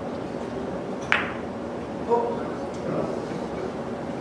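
Clicks of a three-cushion carom billiards shot: a sharp clack about a second in, then a second clack with a brief ring about a second later, over a steady room hum.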